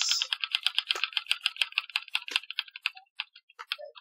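Online spinning name-picker wheel's ticking sound effect: a rapid run of clicks that slows and thins out in the last second as the wheel loses speed.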